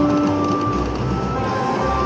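Video slot machine electronic music and held beeping tones, layered over the steady hum and jingles of other machines around it. A strong low tone fades out about a second in while higher tones come and go.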